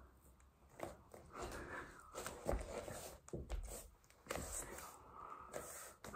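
A man breathing hard through several long, noisy breaths, tired from push-ups, with a few soft knocks from his movement on the floor.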